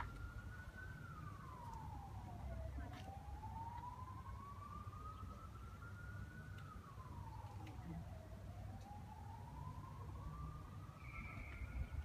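A faint emergency-vehicle siren wailing: its pitch climbs slowly over about five seconds, drops quickly, then climbs again, repeating about twice, over a low rumble.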